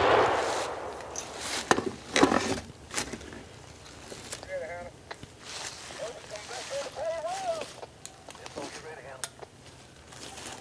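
A gunshot's report fading off through the woods, followed by a few more sharp cracks over the next two seconds. From about four seconds in, faint distant voices call out in long wavering tones.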